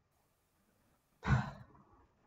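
A person's short sigh, a breath pushed out into a close microphone about a second in, with a brief low puff on the mic; faint room tone otherwise.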